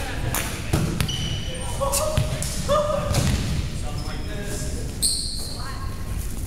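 Indistinct, echoing voices in a large gym, with several thuds and a few short, high squeaks typical of athletic shoes on a hardwood court.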